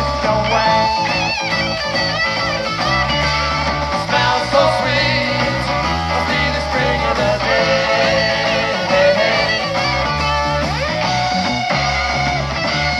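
Rock band recording with guitar over bass and drums, its higher notes wavering and bending in pitch.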